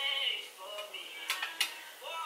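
Light clicks of a plastic foundation bottle against a metal makeup mixing palette as foundation is poured out, two sharp ones about a second and a half in.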